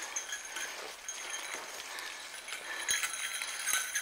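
A small bell jingling faintly and steadily as someone walks through forest undergrowth, with a few soft steps or twig snaps at about one and a half, three and three and a half seconds in.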